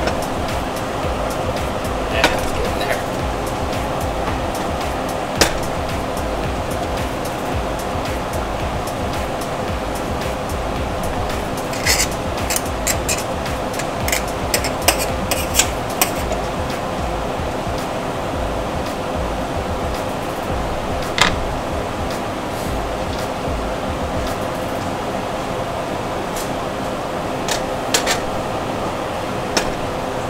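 Waffle batter sizzling steadily inside a hot cast iron Griswold Heart & Star waffle iron on an electric stove coil, with occasional sharp pops and crackles, most of them bunched together a little under halfway through.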